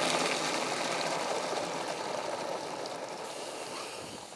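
Water running from a garden tap into a plastic can that holds a squirt of dishwashing liquid, a steady rush that slowly gets quieter as the can fills and foams over.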